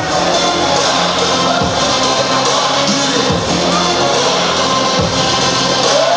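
Music with singing over a steady low beat.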